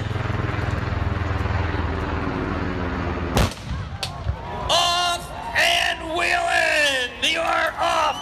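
A starting cannon fires one sharp shot about three and a half seconds in, with a fainter crack just after. It cuts off a steady low drone, and spectators break into whoops and cheers for the start of the race.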